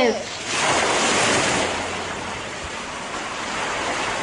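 A steady rushing hiss with no rhythm or pitch, coming in just after a voice trails off at the start.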